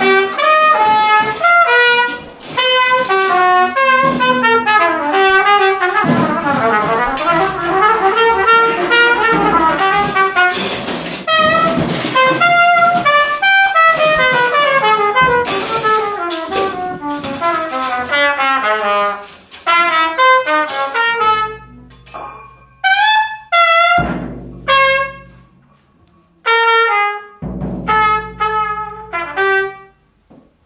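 Trumpet playing fast, busy runs over sharp percussive strikes on a floor tom. In the last third the playing thins out to sparse trumpet notes, with a few deep drum booms.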